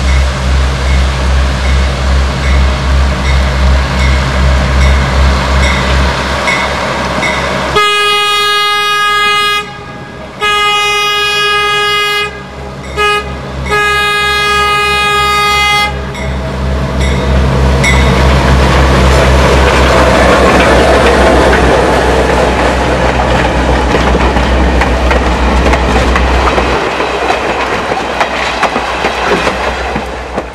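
GE 44-ton diesel switcher locomotive approaching with its engine throbbing, then blowing its horn in the long-long-short-long grade-crossing signal, the last blast held longest. It then passes close by, its engine and the wheels of the cars behind it making a loud steady rush that dies away near the end.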